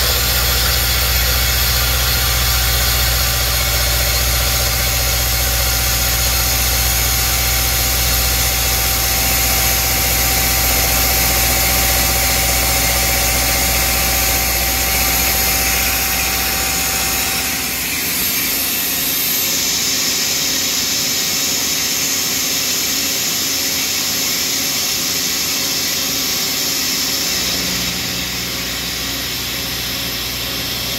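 Mazak CNC mill-turn machine milling a hex with an end mill under flood coolant: steady spindle and cutting hum with a steady whine and coolant spray hiss. The low hum and whine drop away about 18 seconds in, leaving mostly the hiss.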